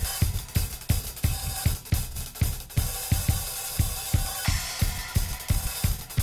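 Playback of a live-recorded drum kit track, with kick, snare, hi-hat and cymbals playing a steady groove after being warped and quantized in Ableton Live 8. The timing still sounds not quite right in there.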